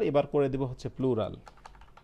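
Computer keyboard typing: a short run of quick key clicks in the second half, after a spoken phrase.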